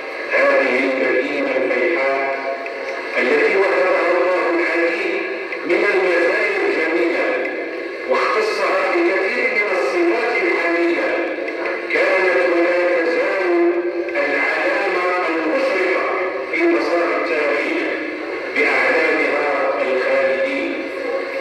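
A man's voice reciting from a written text into a microphone, carried over a sound system, in even phrases of two to three seconds with short breaks between them.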